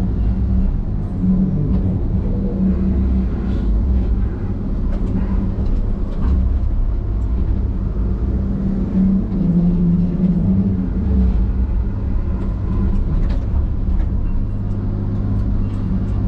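Diesel engine and hydraulics of a John Deere log loader running steadily under load, heard from inside the operator's cab, with a few light knocks as the grapple handles logs.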